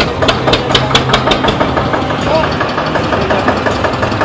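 Diesel tractor engine idling with a regular knock, under people's voices.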